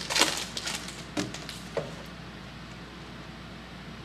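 Foil trading-card pack wrapper crinkling and crackling in the hands as it is torn open, with a few sharp crackles in the first two seconds.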